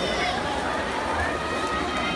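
Crowd of spectators shouting and cheering, high raised voices overlapping in an echoing indoor pool hall, over a steady wash of noise.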